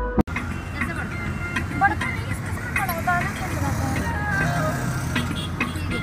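Background music cuts off abruptly just after the start, giving way to the steady low engine and road rumble inside a moving car, with voices and some music over it.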